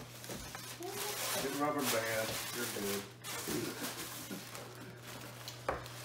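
Faint, indistinct voices in a small room, with a single sharp click near the end.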